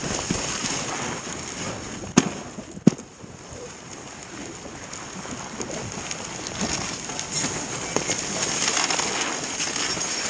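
Dog sled runners hissing over packed snow as the sled is pulled along, with small knocks and rattles from the sled and two sharp clicks, a little after two seconds and just before three seconds.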